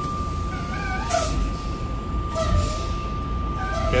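A steady, unbroken electronic warning tone sounding in a semi-truck cab, over the low rumble of the truck's idling engine, with faint wavering high-pitched sounds coming and going.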